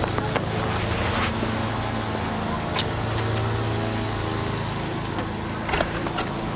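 A fist knocking on a door a few times in the first second or so, over the steady low hum of a vehicle engine in the street.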